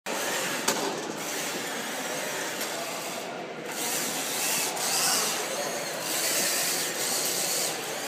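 Drill motors driving a gantry claw robot's carriage around its XY table, a continuous mechanical whirring and clatter that swells in uneven spurts, with a sharp click less than a second in.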